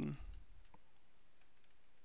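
Clicks at a computer as on-screen buttons are pressed: a soft low thump just after the start, one clear click under a second in, then a few fainter clicks over a steady faint room hum.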